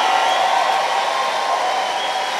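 A congregation clapping and shouting together: a steady, dense wash of noise with voices held under it.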